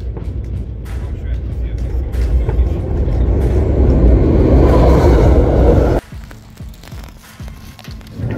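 Fireworks going off: a dense run of crackles and bangs over a low rumble, building louder and then cutting off suddenly about six seconds in, leaving a few scattered clicks.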